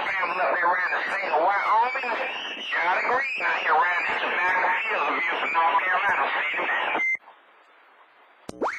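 A voice coming over a Magnum S-6 CB radio, thin and narrow in tone. About seven seconds in, the transmission ends with a short beep, a roger beep marking the end of the other station's turn, and the channel drops to a faint hiss.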